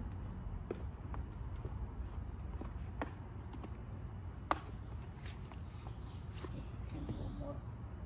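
Plastic golf discs clicking and knocking as they are handled and slid into a fabric pouch, with a sharper knock about halfway through, over a steady low rumble.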